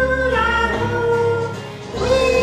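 A woman and children singing a Christmas song with instrumental accompaniment, holding long notes.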